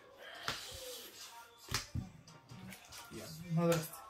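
Sleeved trading cards slapped down onto a playmat on a table: two sharp taps, about half a second and just under two seconds in.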